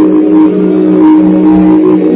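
Instrumental music: loud, sustained droning tones that hold steady, with the low note shifting to a new pitch about a second in.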